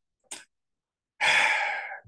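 A man's short mouth click, then a loud breathy sigh that fades over just under a second.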